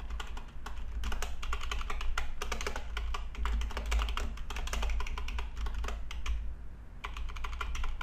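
Typing on a computer keyboard: a quick run of keystrokes with a short pause about six seconds in.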